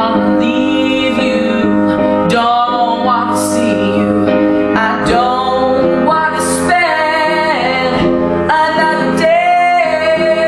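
A man singing a slow soul ballad in a high voice, accompanying himself on an upright piano, with long held sung notes over sustained piano chords.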